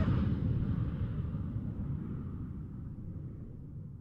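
Low rumbling noise that fades away steadily and evenly.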